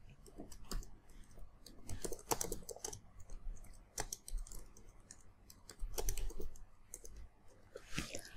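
Computer keyboard typing: quiet, irregular keystrokes in short runs as a line of code is entered.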